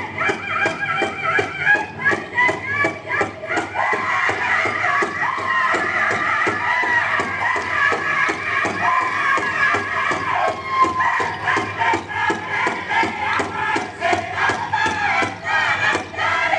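Powwow drum group singing in high, wavering voices over a steady bass drum beat, about three beats a second, music for a traditional dance.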